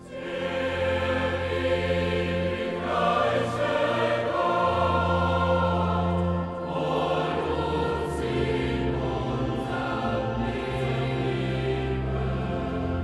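Choir singing sacred music with accompaniment over long-held low bass notes that change every second or two. It comes in suddenly and at full strength at the start.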